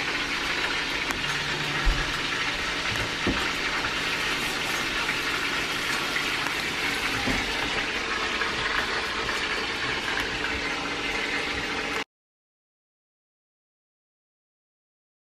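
Chicken pieces cooking in a pot on the stove: a steady sizzle with a few light knocks, cutting off suddenly near the end.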